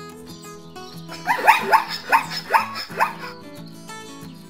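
Zebra calling: a rapid series of about six barking calls over roughly two seconds, each falling in pitch. Background music plays throughout.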